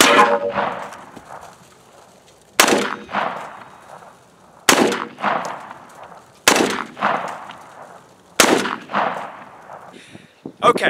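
Gunshots fired at a body-armor plate, five in all about two seconds apart, each a sharp crack that trails off over about a second.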